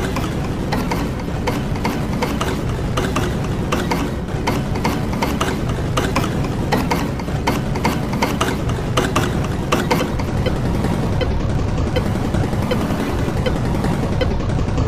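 Heavily processed, layered soundtrack of an effects edit: a continuous clatter of rapid, irregular clicks over a steady low rumble, like a ratcheting mechanism.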